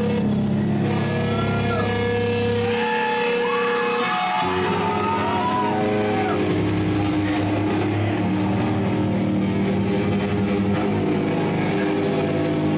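Distorted electric guitar and bass holding long, droning notes, with bending, wavering high notes above them and no clear drum beat. The low notes change about four and a half seconds in.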